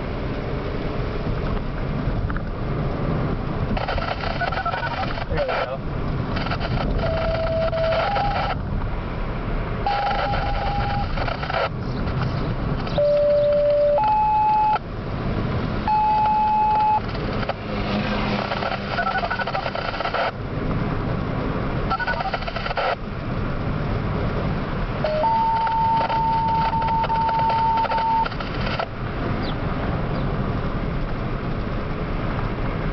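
Radio receiver sending out a sequence of siren-activation tones: single steady beeps about a second each at changing pitches, the last one held for about three seconds near the end. Between the tones come bursts of hissy radio transmission, over the low road noise of a moving car.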